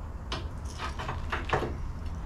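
A few light knocks and scrapes of a plasma cutter torch being set against a steel plate on a steel bench.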